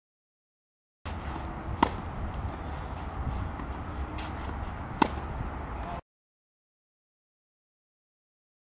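A tennis ball struck by a racket twice, two sharp hits about three seconds apart, over a steady low outdoor rumble that starts and cuts off abruptly.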